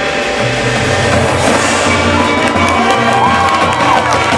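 High school marching band playing its field show, with low notes held from about half a second in, and a crowd cheering over the music.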